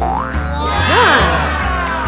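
Instrumental cartoon background music with a steady bass line, overlaid by springy cartoon sound effects: a quick rising glide at the start and pitch swoops that rise and fall about a second in.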